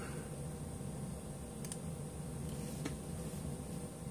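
Low steady room noise with two or three faint, short clicks around the middle.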